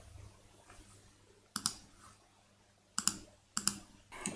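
A few sharp clicks at a computer, mostly in quick pairs like double-clicks: one pair about a second and a half in, then two more pairs near the end, quiet in between.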